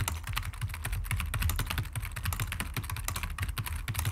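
Fast typing on a computer keyboard: a quick, even run of keystroke clicks.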